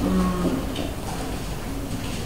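A man's voice holding one flat, drawn-out "uhh" for about half a second. After it there is only faint murmur and room noise.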